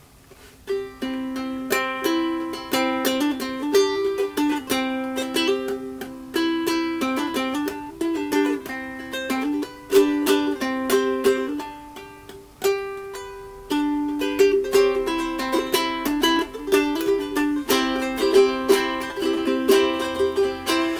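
Solo ukulele playing an instrumental introduction, which starts about a second in: picked melody notes mixed with strummed chords, before the vocals come in.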